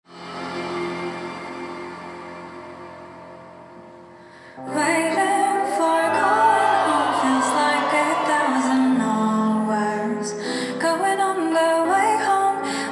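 Live pop concert music: a held chord slowly fades, then about four and a half seconds in the band comes in fuller and a female singer begins singing into a microphone.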